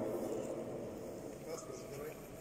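An announcer's amplified voice dying away in the echo of a large sports hall, then quiet hall room tone with faint voices and a small click near the end.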